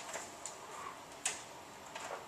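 A few light clicks over quiet room hiss, the sharpest one a little past halfway.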